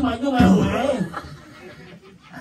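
A man's voice over a microphone, chuckling and half-speaking, trailing off after about a second.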